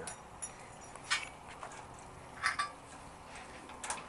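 A handful of sharp, light clicks and taps from small metal parts being handled during brake hardware assembly, spread irregularly, the loudest about a second in and again about two and a half seconds in.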